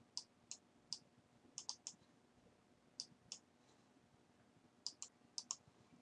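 Faint typing on a computer keyboard: about a dozen short key clicks in small clusters with pauses between.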